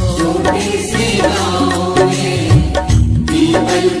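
Instrumental break in a Hindi Krishna bhajan: melody over a steady drum beat, with the singer coming back in at the very end.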